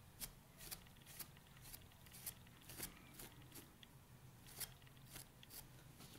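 Faint, quick rubbing strokes of a cloth rag wiping dust off a laser-cut acrylic piece, about two strokes a second.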